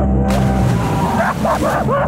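Background music with a steady bass line, joined about a third of a second in by a hissing water spray, and from just past the middle by short, high yelping cries that rise and fall several times.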